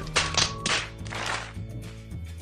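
Background music with held low notes, and three short noisy bursts in the first second and a half.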